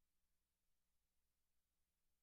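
Near silence: the sound feed is all but dead, with only a very faint steady hum.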